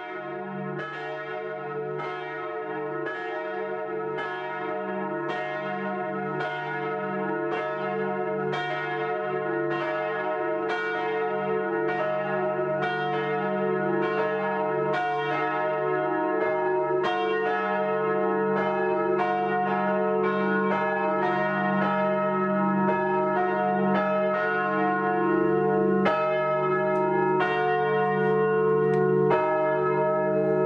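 Several church bells ringing together in a peal: a steady run of strikes at different pitches over their lingering hum, growing gradually louder.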